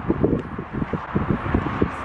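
Wind buffeting the microphone in irregular low gusts and rumbles.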